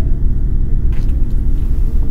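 A loud, steady low rumble with no clear pitch.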